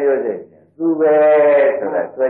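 A man's voice giving a Buddhist sermon in Burmese, with long, drawn-out held syllables and a brief pause about half a second in.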